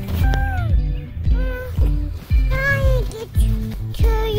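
Background music with a steady bass beat and a voice singing over it.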